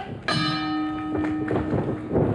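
Wrestling ring bell struck once to start the bout, its metallic ring sustaining and fading over about a second and a half.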